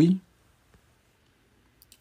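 A man's voice finishing a short word at the very start, then near silence with a few faint clicks just before he speaks again.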